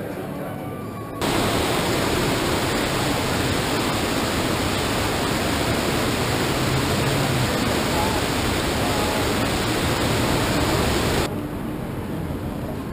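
Artificial rock waterfall cascading into a pool: a steady, even rush of falling water that starts suddenly about a second in and cuts off abruptly near the end.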